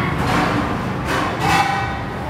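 Stainless-steel stools clanking together as they are stacked, two clanks each leaving a brief metallic ring.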